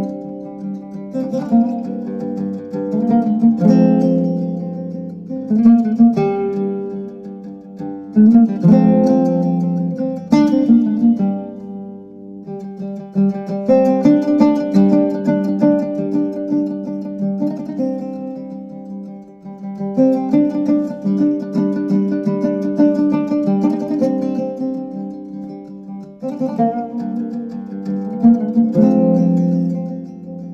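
Instrumental music on a plucked string instrument, picked notes ringing and fading, played in phrases with brief lulls between them.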